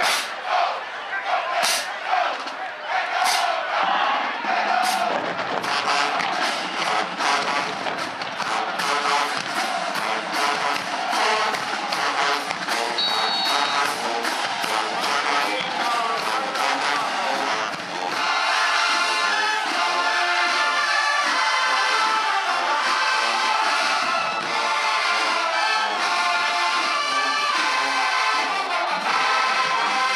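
Marching band playing: drums and crash cymbals beat alone at first, with spaced crashes that pick up into a fast, steady drum cadence. About eighteen seconds in, the full brass section, sousaphones included, comes in over the drums.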